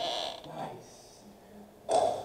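A short breathy laugh, then quiet room tone.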